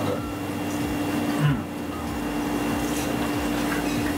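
Steady low mechanical hum of room noise, with a short closed-mouth "mm" from a man chewing, about one and a half seconds in.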